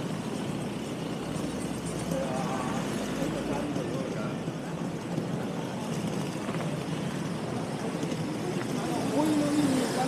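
Busy city-street ambience: cars and vans moving slowly along a paved shopping street, with the steady hum of traffic and murmuring voices of passersby. One voice is louder near the end.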